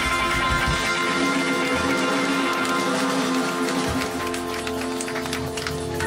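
Live rock band on a club stage holding a long, ringing chord, with low drum thumps in the first second. Sharp scattered claps come in over it in the second half.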